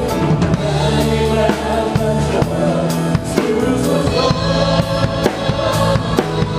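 Live praise band playing: a drum kit close by with kick, snare and cymbal hits over a bass guitar line, and a singer at a microphone.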